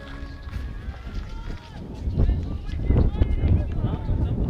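Music ends just after the start. Then wind rumbles on the microphone from about two seconds in, under people's voices close by.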